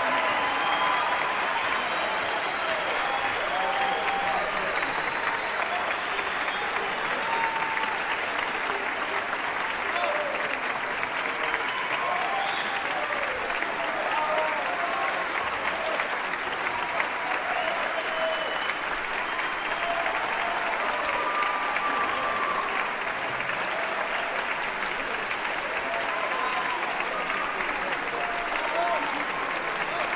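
Large audience applauding steadily in a concert hall, with scattered shouting voices over the clapping.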